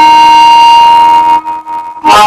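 Diatonic harmonica in A-flat played cross harp in E-flat, blues style, cupped in both hands: one long held high note for over a second, then a few short, softer notes.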